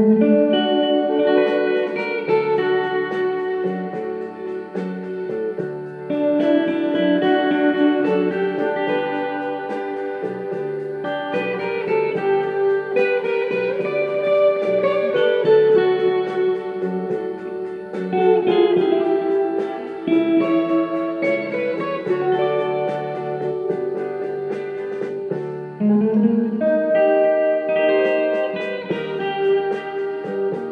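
Electric guitar playing a melodic lead line of picked single notes over recorded backing music with a sustained held tone underneath.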